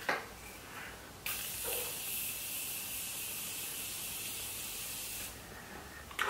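Morphe makeup setting spray misting the face: one continuous fine hiss lasting about four seconds, starting just over a second in.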